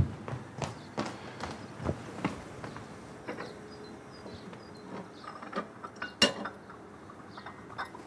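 Light, scattered clicks and knocks of objects being handled and set down, with one sharper click about six seconds in.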